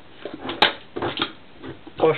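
A few short knocks and rustles of kitchen handling, with one sharp click about half a second in.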